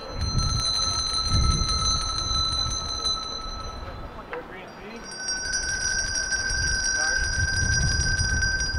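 Small handbells ringing in a sound check, one note at a time: a group rings one pitch continuously with many quick clapper strikes for about three seconds, then after a short gap a slightly higher note starts ringing and carries on. Low crowd murmur underneath.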